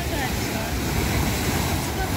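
Sea waves breaking and washing over shoreline rocks, with wind buffeting the microphone.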